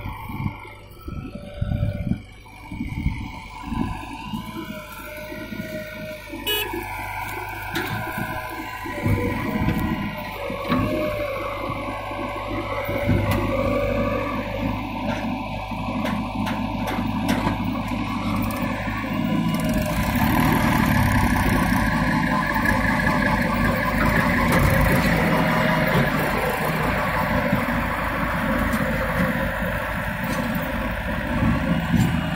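Diesel engines of a JCB 3DX backhoe loader and a Mahindra tractor running as the earth is loaded. About twenty seconds in the engine sound grows louder as the tractor pulls away with the loaded trolley.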